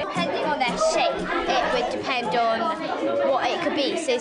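Many children's voices talking over one another: a busy, overlapping classroom chatter in which no single voice comes through clearly.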